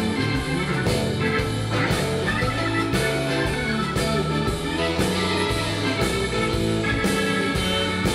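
Blues-rock recording in an instrumental stretch led by guitar over a steady beat, played back loud through Sonus Faber Olympica Nova 3 floor-standing loudspeakers and picked up in the room.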